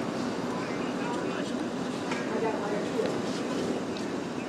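Indistinct voices of people talking in the background over steady outdoor noise.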